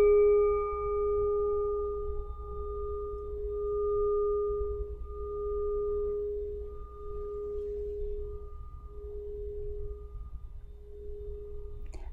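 A meditation singing bowl, struck once, ringing with a low hum and fainter higher tones that wobble in slow pulses about once a second and gradually fade; the highest tones die away within the first couple of seconds. It sounds the start of the meditation.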